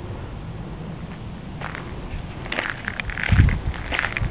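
Wind rumbling on the microphone, with crackling footsteps starting about halfway through and growing louder, with a heavy thump near the end.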